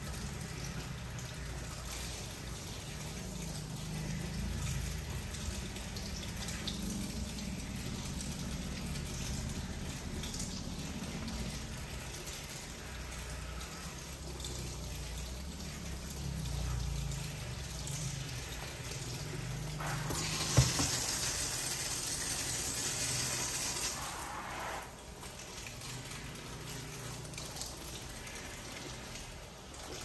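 Water running from a handheld shower sprayer over a person's head into a salon wash basin, rinsing the mayonnaise hair treatment out of the hair. The water gets louder and hissier for a few seconds about two-thirds of the way in, with one sharp click.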